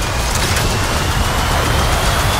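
Dense action sound effects from a film trailer: a loud continuous deep rumble with rushing noise and a thin whine that slowly rises in pitch, accompanying a flying and explosion sequence.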